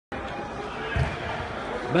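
Indistinct background voices and room noise, with one low thump about a second in.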